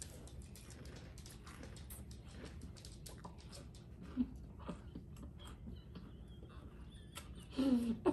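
Faint, irregular crunching and small clicks of a mouthful of sugar cookie cereal with marshmallows being chewed. A voice starts just before the end.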